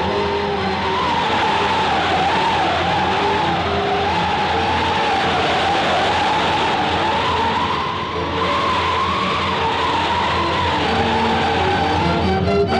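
Film sound effect: a steady, loud hiss with a high whine that wavers slowly up and down, over faint background music.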